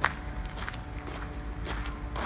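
Footsteps, about two steps a second, each a short crunching tread.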